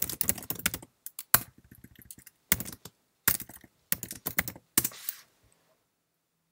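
Computer keyboard typing a short command: bursts of key clicks, a fast run at the start, then a few shorter clusters, stopping about a second before the end.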